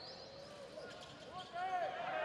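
Quiet ambience of a basketball game in play in a gym: faint court noise, with a faint voice rising in the last half second.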